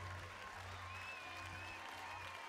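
Studio audience applauding and reacting, with music playing softly underneath.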